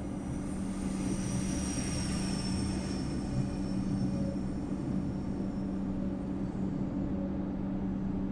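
Comeng electric suburban train running, heard from inside the carriage: a steady low hum over the rumble of the wheels, with a faint high whine that slides slowly down in pitch over the first few seconds.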